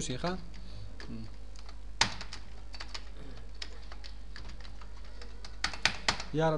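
Computer keyboard being typed on: scattered single keystrokes, a sharper one about two seconds in, and a quick run of clicks near the end.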